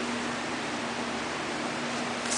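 Steady, even hiss with a constant low hum underneath: background room noise with no distinct events.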